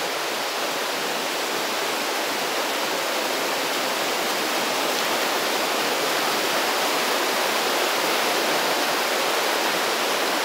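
Whitewater stream rushing over boulders and rock slabs, a steady noise that grows slightly louder past the middle.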